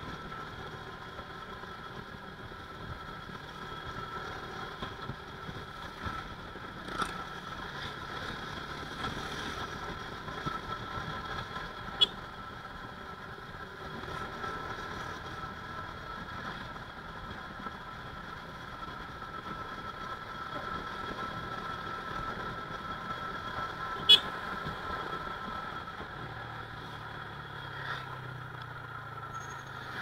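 Motorcycle riding along a road, heard from the handlebars: a steady mix of engine and road noise. Two short sharp clicks stand out, about twelve seconds apart.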